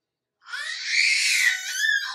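A young child's loud, high-pitched shriek, starting about half a second in.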